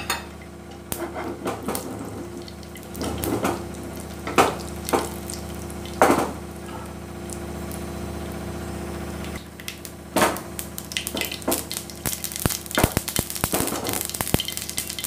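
Mustard seeds crackling in hot mustard oil in a frying pan: scattered pops at first, coming thick and fast near the end as the seeds start to splutter. A few louder knocks stand out over a steady low hum.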